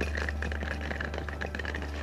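Wheels of a rolling suitcase pulled over interlocking paving stones, giving a light, irregular clicking and rattling, over a steady low hum.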